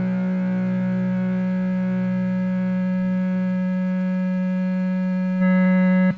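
Lo-fi garage-pop recording ending on one long held, distorted electric guitar note: a steady drone with many overtones that swells louder near the end.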